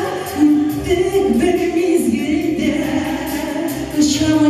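A woman singing a pop song live into a handheld microphone over musical accompaniment with a steady beat.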